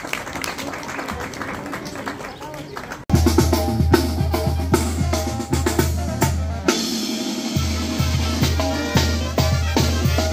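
Crowd voices, then a Mexican banda brass band cuts in abruptly about three seconds in. A sousaphone plays a loud bass line under clarinets and brass, with snare, bass drum and cymbal hits keeping the beat.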